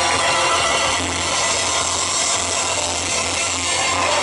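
Live band playing loudly: electric guitars, bass, trombones and drums together in a dense, steady wash of sound.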